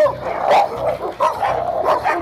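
Excited leashed dogs whining high and wavering as they strain forward, with a few sharp yelps or barks about half a second in and near the end.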